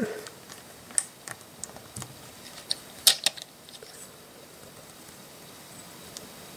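Small plastic LEGO bricks clicking and tapping against each other as they are handled and pressed together, a scattering of light clicks, the loudest pair about three seconds in, then only faint handling.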